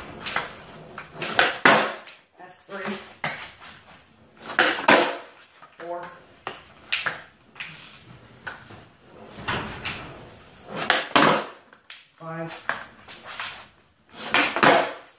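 Skateboard wheels and deck slapping down on a bare concrete floor as the rider lands 180s in a row: sharp knocks, often two close together, every few seconds. Brief bits of voice fall between the landings.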